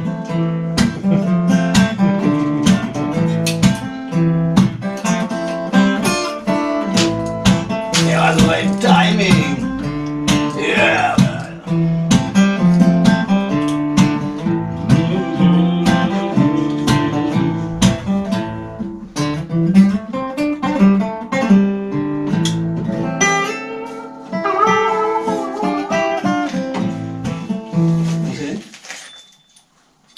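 Acoustic guitar being played live, a run of picked and strummed notes that breaks off just before the end.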